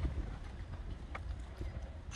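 Outdoor horizontal leg press working: the seat carriage slides along its steel rail, with a few faint knocks, the clearest about halfway through, over a low rumble.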